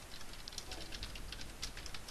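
Typing on a computer keyboard: a run of quick, unevenly spaced keystrokes.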